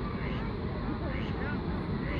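Outdoor park ambience: a steady low rumble with faint, distant voices over it.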